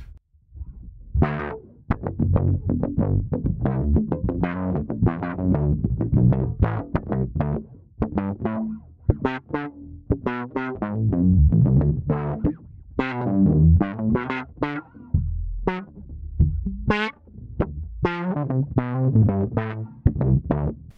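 Electric bass (Fender Mustang PJ) picked with a plectrum through a Way Huge Pork Loin overdrive into a DOD FX25 envelope filter, with the bass's tone knob backed off. It plays a riff of distorted notes, starting about a second in, each with an auto-wah sweep. The sound is grungy.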